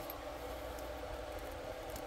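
Steady low background hum with a faint even hiss. No distinct event stands out.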